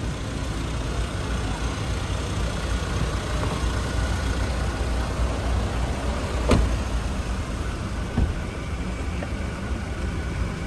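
Car engine idling, a steady low rumble, with a sharp click about six and a half seconds in and a fainter one shortly after.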